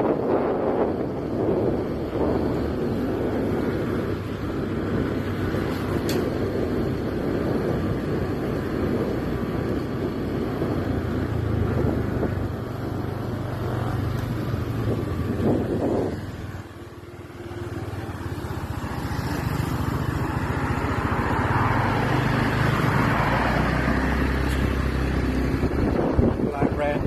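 Motorcycle engine running while riding along a road, with wind rushing over the microphone. About two-thirds of the way through, the sound drops briefly and then picks up again.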